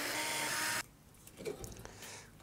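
Cordless electric screwdriver running, backing out a system-fan screw: a steady motor whine that stops abruptly under a second in. A few faint clicks follow.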